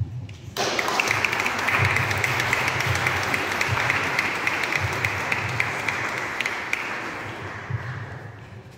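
Congregation applauding, starting suddenly about half a second in and slowly dying away near the end.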